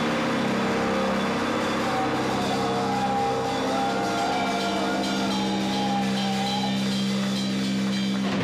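Heavy instrumental rock drone: pre-recorded guitar and bass played through amplifier stacks hold long sustained low chords, with higher wavering guitar tones over them and no drums.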